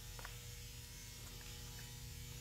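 Faint, steady electrical hum made of several constant tones: quiet room tone.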